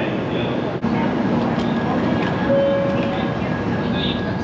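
Shinkansen train pulling into a station platform: a steady rumble with short held tones, over voices on the platform. There is a brief drop about a second in.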